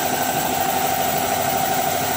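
An engine running steadily: an even, unbroken hum.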